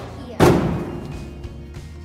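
A cardboard box of drink cartons and a plastic jug thrown into a recycling dumpster, landing with one loud thud about half a second in that dies away over the next second.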